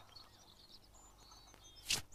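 Faint birdsong, a scatter of short high chirps over a quiet background, then a short loud burst of hissing noise just before the end.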